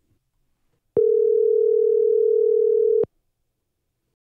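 Telephone ringback tone heard on the caller's end: one steady, two-second ring that starts about a second in and cuts off cleanly, the sign that the called phone is ringing.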